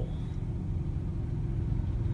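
Car engine idling, a steady low rumble heard inside the cabin of the stationary car.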